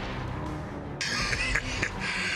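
Cartoon background score music, joined about a second in by a sudden loud hissing rush of sound effect that runs on to the end.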